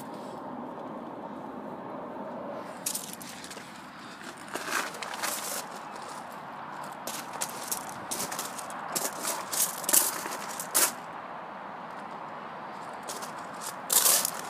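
Footsteps crunching on loose gravel, an irregular run of short crunches over a steady background hiss.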